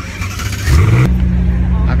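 A car engine starting up: it revs upward in pitch about three-quarters of a second in, then settles into a loud, steady idle.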